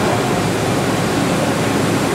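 Makino V22 vertical machining center running its spindle warm-up cycle: a steady, even hiss with faint tones beneath it.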